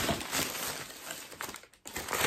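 Brown paper bag rustling and crinkling as it is opened by hand, with quick irregular crackles that drop out for a moment near the end.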